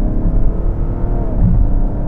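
BMW X7 xDrive40d's 3.0-litre inline-six diesel under hard acceleration, heard from inside the cabin over steady road rumble. The engine note climbs, drops at an upshift a little past a second in, then climbs again, with hardly any diesel character to it.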